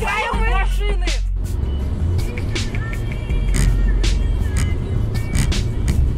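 A very high-pitched, wavering scream that breaks off about a second in, then music over the steady low rumble of a car's engine and road noise picked up by a dashcam.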